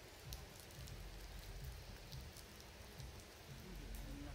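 Faint outdoor ambience: an uneven low rumble of wind on the microphone under a light hiss, with a few faint ticks.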